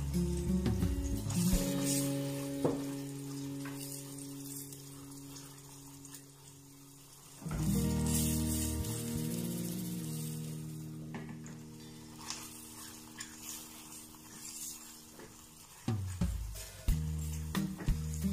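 Soft background music of long held chords that change about halfway through, with a faint sizzle of diced onion and garlic frying gently in butter underneath.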